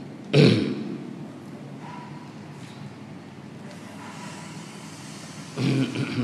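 A man's short, loud throat noise close to the microphone about half a second in, with a weaker one near the end, over a steady low room hum.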